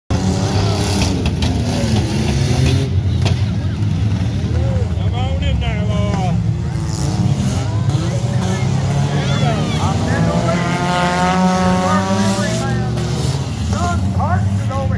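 Several figure-8 race cars running on a dirt track, a steady deep engine rumble with pitches rising and falling as the cars rev and lift through the course.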